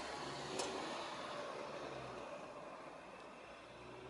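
Faint hiss with a faint low hum, fading out slowly: the quiet tail left after the closing music stops.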